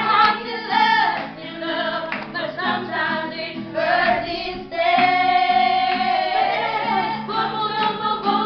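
A group of women singing together to an acoustic guitar, with one long held note about five seconds in.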